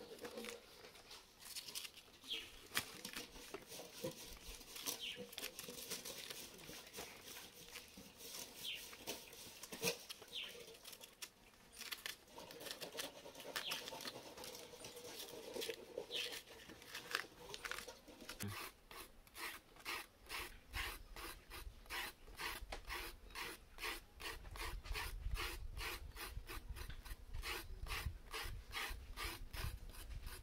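A knife scraping and cutting the peel off raw cassava roots, in short rasping strokes: scattered at first, then about halfway through settling into a quick, steady run of about four strokes a second.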